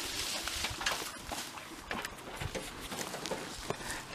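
Armfuls of cut cane stalks and leaves rustling and crackling as they are lifted out of a wheelbarrow and tossed over, with many small scattered clicks.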